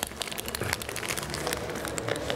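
Irregular crackling and rustling made of many small clicks, with no clear rhythm.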